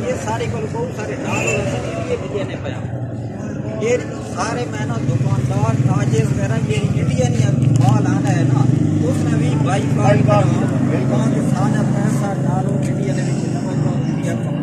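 Men's voices talking, with a steady low engine rumble coming in about five seconds in and running under the voices.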